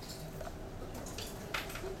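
Electric vacuum pump running with a steady low hum as it pumps the air out of a bell-jar chamber, with a faint click about one and a half seconds in.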